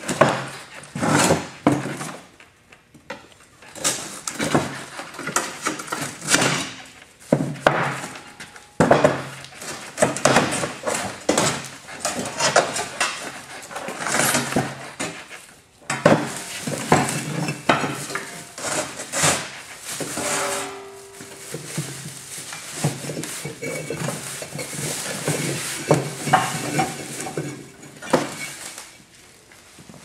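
An old gas-forge liner being pried and broken out of its steel housing by gloved hands: irregular scraping, crumbling and clattering of liner pieces against the metal shell, with rustling as pieces go into a plastic bag.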